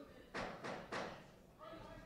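Boxing gloves landing in a quick three-punch combination: three short, sharp hits about a third of a second apart.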